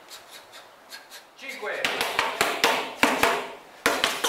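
Escrima sticks striking in a quick, even rhythm, about five hard clacks a second, starting about a second and a half in; before that only faint light taps.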